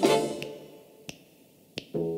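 Dance-band introduction of a 1960s studio recording: a brass chord sounds and dies away, leaving a break in which only three sharp clicks keep the beat, about two-thirds of a second apart. The band comes back in near the end.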